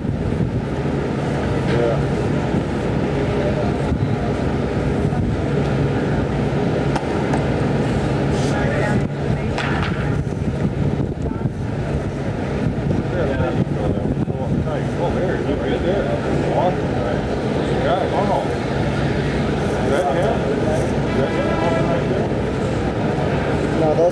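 Outdoor noise on a camcorder microphone: a steady rush of wind over a constant low hum, with indistinct voices in the background.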